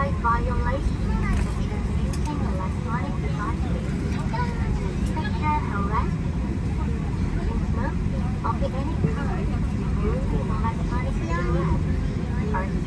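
Steady low rumble inside the cabin of a Boeing 737 moving slowly on the ground, with indistinct voices talking underneath.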